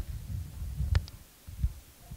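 Irregular low thuds and a sharp click about a second in: hands working a laptop on a table, with keys, trackpad and table knocks picked up by a microphone on the same table.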